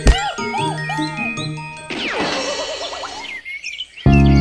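Cartoon sound effects for a tumble off a bicycle: a sharp thump, then a run of bouncing tinkly notes, a long falling whistle and a wobbling tone that fades, over soft background music.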